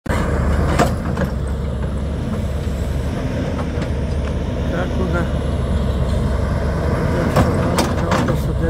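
Heavy construction machinery running steadily, a continuous low engine rumble with a few sharp knocks.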